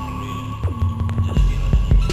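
A sparse break in a dark electronic techno track: a deep throbbing bass with a held note that slides down and sustains about half a second in, over faint even ticks.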